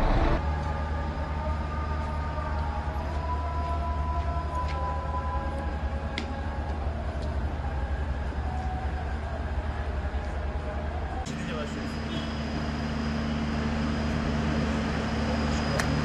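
Steady low vehicle rumble with faint, indistinct voices. About eleven seconds in it switches abruptly to a different steady hum.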